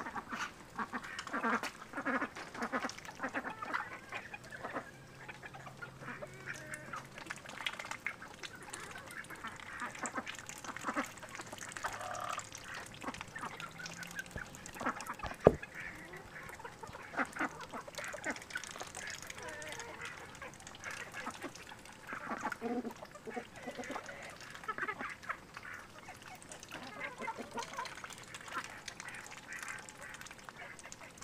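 Domestic ducks quacking and dabbling their bills in muddy water and puddles. A single sharp click stands out about halfway through.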